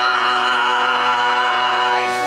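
A bayan (chromatic button accordion) holding a long, steady chord, with a low chanted throat-sung voice wavering over it.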